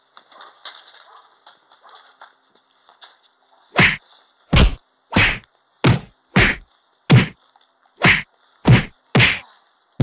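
A rapid series of loud, punchy whack sounds, about ten hard hits spaced a little over half a second apart, beginning about four seconds in after a quiet stretch: fight-scene punch sound effects for a beating.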